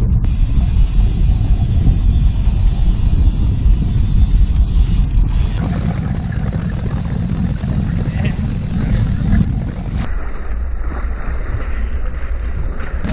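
Steady low rumble of a fishing boat under way at trolling speed, with wind on the microphone and rushing water. The higher hiss cuts off abruptly about ten seconds in.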